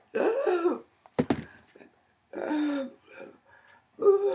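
A woman clearing her throat and coughing in short voiced bursts, with a short knock about a second in.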